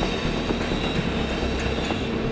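Steady machinery noise of an underground construction site: a constant rumble with a faint high whine over it.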